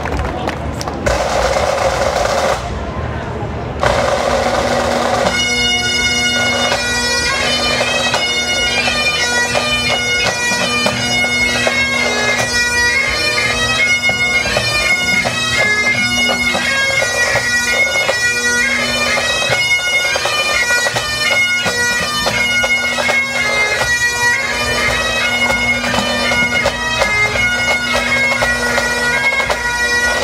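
A full pipe band of Highland bagpipes and drums starting up. For the first few seconds there are drum rolls and noise as the band strikes in. From about five seconds in, the pipes play a march melody over a steady drone, continuing to the end.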